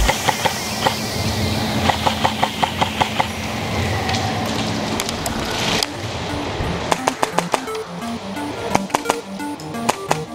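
Background music with a steady beat, over which come several quick runs of sharp snapping clicks, about six a second, from airsoft gunfire.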